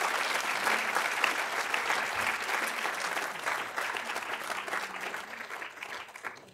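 Audience applauding, with dense, even clapping that tapers off near the end.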